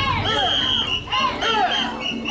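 A group of mikoshi bearers shouting a rhythmic carrying chant, with a shrill whistle blown in repeated short and long blasts to keep time.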